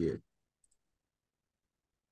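A man's voice trails off at the very start, then near silence with one faint computer mouse click about half a second in.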